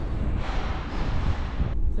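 Steady low rumble and hiss of a vehicle rolling slowly. The hiss drops away shortly before the end.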